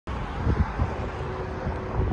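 Steady outdoor traffic noise around a parking lot, with a few low thumps in the first second.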